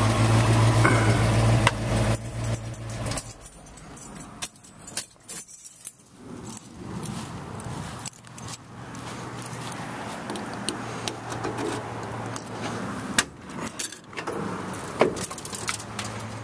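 A steady low engine-like hum that stops two to three seconds in, followed by scattered light metallic clicks and jingles.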